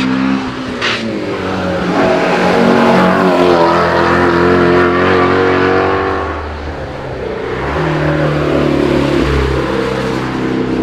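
Ford Mustang Shelby GT350 prototype's 5.2-litre flat-plane-crank V8 accelerating hard past on track, its note climbing and staying loud, then dropping as it lifts off and climbing again near the end. A short sharp crack sounds about a second in.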